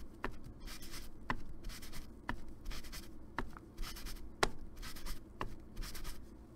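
Crumpled paper towel dabbed onto an ink pad and pressed onto a cardstock card, a papery rustle and scuffing, with a sharp tap about once a second.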